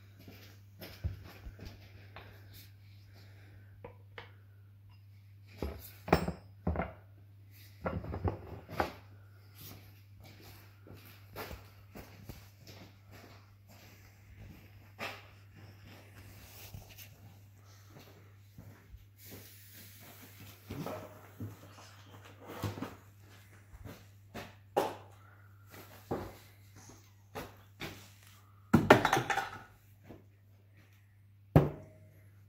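Scattered clinks and knocks of tools and steel parts being handled on a Stihl MS660 chainsaw's body as its bumper spikes are worked on, with a burst of clatter near the end. A steady low hum runs underneath.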